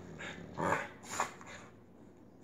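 English bulldog giving about three short barks, roughly half a second apart.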